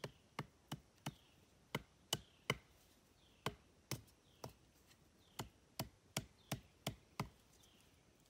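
A wooden stake being pounded into the ground by hand: a series of sharp, dull knocks, about sixteen strikes in short runs with brief pauses, roughly two to three a second.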